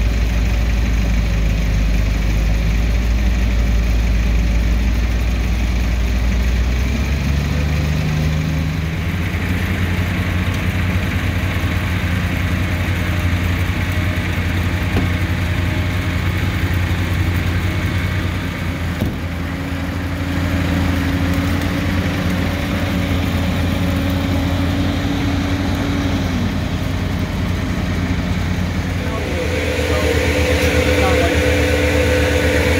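Heavy machinery engines running steadily. The hum changes in pitch and mix about seven to nine seconds in, and a higher tone near the end slides downward as an engine eases off.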